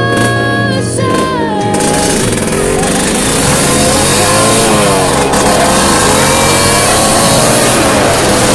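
Music with held notes for about the first two seconds, then a motorcycle riding along with loud wind noise on the microphone, the engine's pitch rising and falling.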